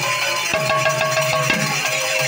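Live folk music: large two-headed barrel drums beaten by hand in a steady beat, with small hand cymbals and a sustained melody tone.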